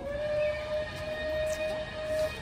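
A steam locomotive's whistle blown in one long, steady blast of about two seconds, sounding several notes together.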